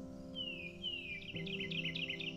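Sustained ambient music chords that change once partway through, with birdsong laid over them: two descending whistled notes, then a quick run of short chirps.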